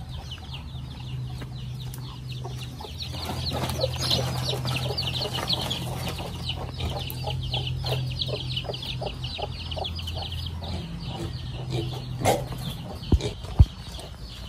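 Chickens clucking and calling in quick, overlapping calls, dying away about three-quarters of the way through, over a steady low hum. A few sharp knocks near the end.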